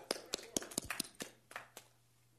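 A few people clapping their hands, scattered irregular claps that stop shortly before the end.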